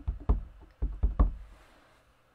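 Clear acrylic stamp block tapped repeatedly onto a stamp ink pad in its plastic case to ink the stamp: a quick run of dull knocks that stops about a second and a half in.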